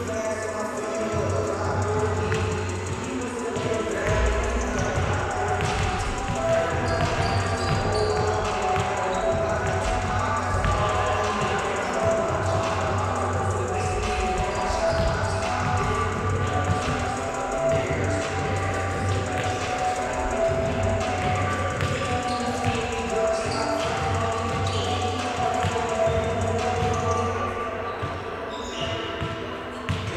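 Music playing through a large sports hall while basketballs bounce repeatedly on the wooden court as players shoot around during warm-up.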